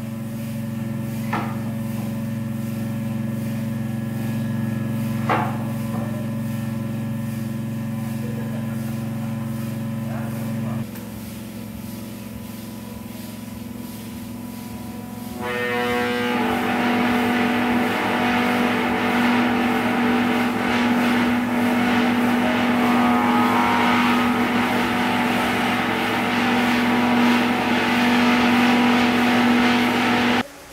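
Experimental ensemble improvisation built from sustained low drone tones. About halfway through, a loud, grainy friction rasp joins as a hand rubs the head of a small wooden-shelled drum, held over a steady low tone.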